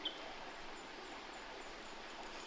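Quiet outdoor bush ambience: a faint steady hiss, with a single short high chirp right at the start and a faint, very high call repeated about four times a second through the second half.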